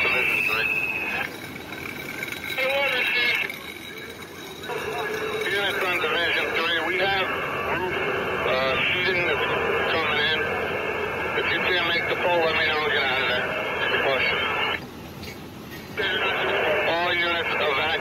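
Fireground radio traffic heard through a radio speaker: tinny, hard-to-follow voices in a narrow band, stopping briefly three times as transmissions end, with a short high tone right at the start.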